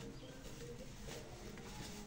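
Faint rustling of fabric as a lined, sequinned sleeve is handled and pulled right side out through a seam opening.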